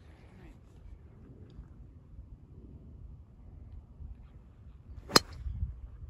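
A single sharp crack about five seconds in as a driver strikes a teed golf ball, swung at about 90 miles an hour.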